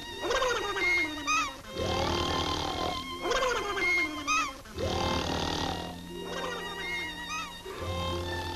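Cartoon snoring from several sleepers together: a rough, rumbling intake followed by a whistling exhale that falls in pitch, repeating about every three seconds over background music.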